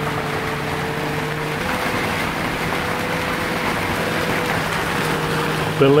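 Torrential rain falling on a sailboat, heard from inside the cabin as a steady hiss, with a low steady hum beneath it.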